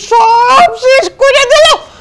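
A person's voice in three drawn-out, high-pitched cries, the pitch climbing within each, more like a theatrical whining wail than plain talk.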